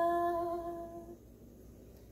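A woman singing one long wordless note that fades out about a second in, followed by quiet room tone.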